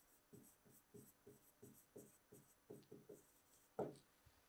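Faint strokes of a pen writing on an interactive whiteboard screen, short scratchy marks about three a second as a word is written out, with a brief louder sound near the end.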